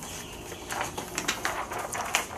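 Paper rustling and crinkling in short bursts as a large folded poster is handled and opened out, starting a little under a second in.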